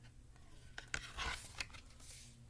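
A thick cardboard page of a board book being handled and turned: a few light clicks and taps, then a soft swish of the page about a second in.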